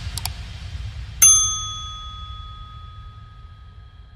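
Subscribe-button animation sound effect: two quick clicks, then about a second in a bright bell ding that rings on and slowly fades away.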